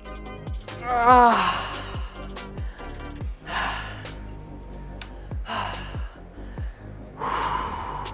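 Background music with a steady beat. About a second in, a man lets out a strained groan that falls in pitch, followed by three heavy, breathy exhales of someone out of breath from hard exercise.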